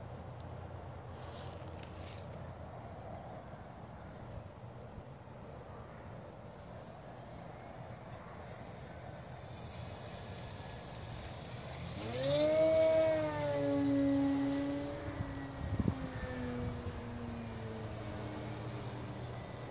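Radio-controlled floatplane taking off from water. A faint rushing builds as it skims the surface, then about twelve seconds in its motor and propeller climb sharply in pitch to a loud steady drone. The drone holds and sags slightly as the plane lifts off and climbs away, with a short click near the end.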